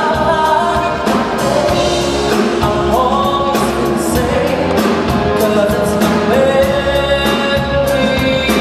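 Male pop singer singing live into a handheld microphone over instrumental accompaniment, amplified through a concert PA.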